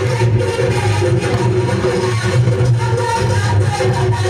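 Loud recorded dance music with a steady beat and a strong bass line, playing without pause.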